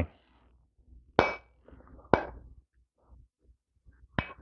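Two metallic clanks about a second apart from plate-loaded iron dumbbells during narrow-grip bicep curls.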